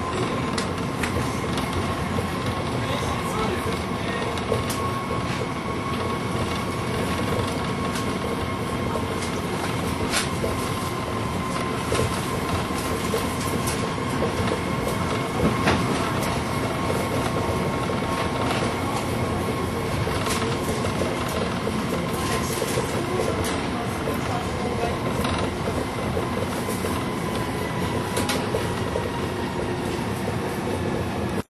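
Riding inside a moving train car: steady running noise with a faint steady whine and scattered clicks of the wheels over the track.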